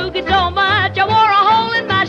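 Late-1940s country boogie record in a passage without lyrics: a wavering, sliding lead melody over a bass line pulsing about twice a second.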